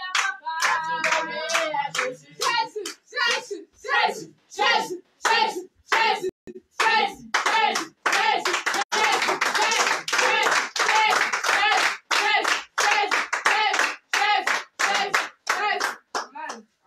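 A small group clapping hands in a steady rhythm, a little under three claps a second, in a small room. Voices sing and call out over the beat near the start and most fully in the middle.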